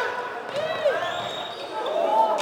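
Floorball players' shoes squeaking on the indoor sports floor as they run and turn: several short squeaks that bend up and down in pitch.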